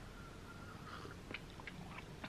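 A few faint mouth clicks and lip smacks from someone tasting a sip of coffee, over quiet room tone.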